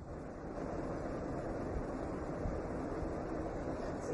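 Steady hiss and low rumble of background noise on an open microphone line, with no speech and no distinct events.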